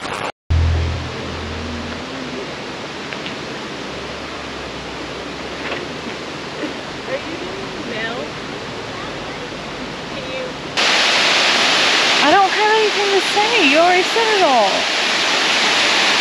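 Steady rush of a waterfall on a rocky creek, jumping much louder after a sudden cut about eleven seconds in. A woman talks over the water near the end, and a music sting stops right at the start.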